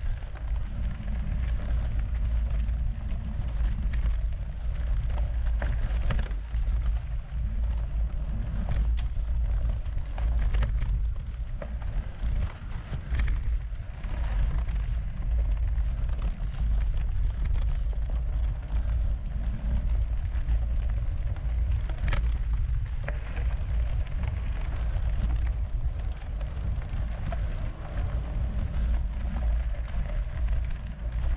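Mountain bike ridden at speed on a dirt and gravel forest road: a steady low rumble of tyre and wind noise, with scattered sharp clicks and rattles.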